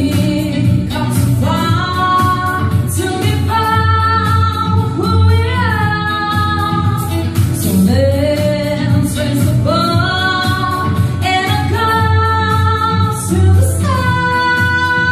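A woman singing a song, holding long notes with slides between phrases, over a backing track with a steady bass.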